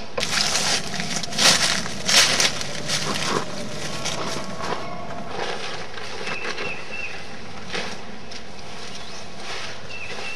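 Rustling and crinkling of camping gear and tent fabric being handled, loudest in a few bursts in the first three seconds, then softer with small clicks.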